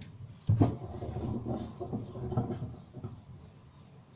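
Kitchen handling noise while vegetables are gathered for a salad: a sharp knock about half a second in, then a couple of seconds of rustling and rummaging that fades out.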